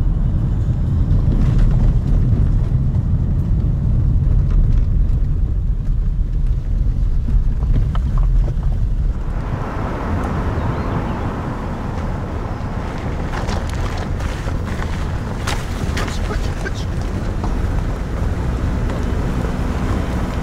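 Car driving slowly over a rough, potholed gravel road: a low, steady rumble heard inside the cabin, then, about nine seconds in, louder tyre and wind noise heard from outside the car, with scattered sharp clicks.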